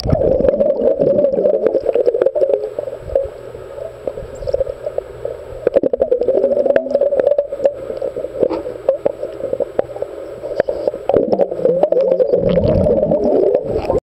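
Muffled underwater sound picked up by a camera submerged in a swimming pool: a steady wavering drone with bubbling and many small clicks.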